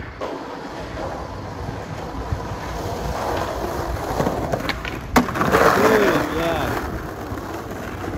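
Skateboard wheels rolling over rough asphalt, a continuous gritty rumble, with one sharp clack from the board a little past five seconds in.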